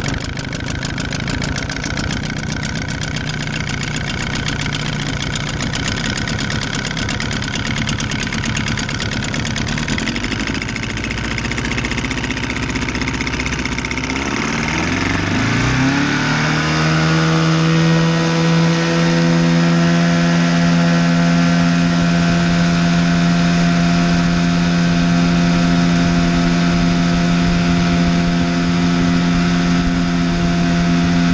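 Evinrude 35/25 two-stroke jet outboard running at low throttle just after starting. About fourteen seconds in it revs up over two or three seconds, then holds a steady high pitch as the boat runs at speed.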